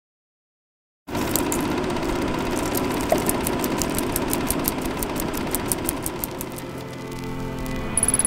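Silence, then about a second in a steady mechanical rattling sound effect starts, with a rapid ticking of about five clicks a second, mixed with music.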